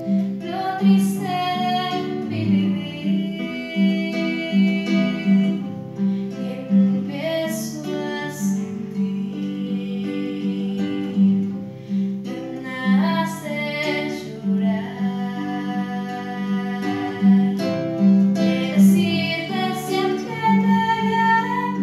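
A girl singing a Spanish-language ballad solo in phrases with short breaks, accompanied by an acoustic guitar playing steady repeated notes.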